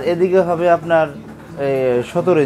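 A man speaking, with drawn-out, sliding vowels; no other sound stands out.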